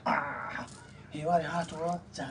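Voices in conversation: a brief high-pitched, whining vocal sound at the start, then speech resumes about a second later.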